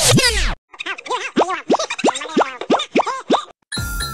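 Electronic intro jingle over a TV-static glitch transition. It opens with a burst of fast falling, scratch-like sweeps lasting about half a second. After a short break comes a bouncy run of about ten quick notes, each swooping up and then down.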